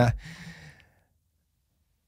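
A man's drawn-out voiced sound ends right at the start and trails off into a soft breathy exhale like a sigh, fading out within the first second; then dead silence.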